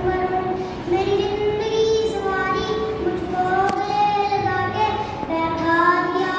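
A young boy singing solo, holding each note for about a second and gliding between them.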